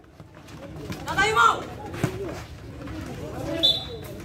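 Shouting voices of players and onlookers at a football match, with a single sharp knock about two seconds in and a brief high whistle tone near the end.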